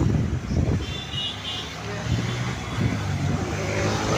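Motor scooter engine running with a steady low hum and rumble while riding in street traffic. A brief high-pitched tone sounds about a second in.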